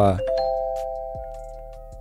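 Live-stream alert chime: a chord of three bell-like notes strikes about a quarter second in and rings on, slowly fading over about two seconds, signalling a viewer's paid message.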